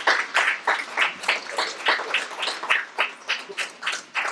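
An audience applauding in a hall, the clapping thinning and fading toward the end.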